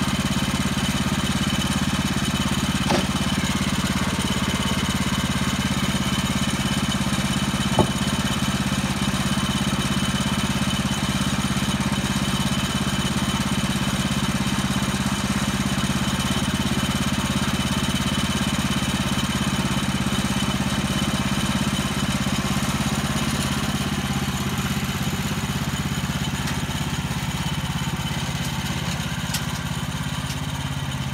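Woodland Mills portable sawmill's small gas engine idling steadily while the saw head is not cutting. A couple of brief knocks from the timber being handled, the louder about eight seconds in.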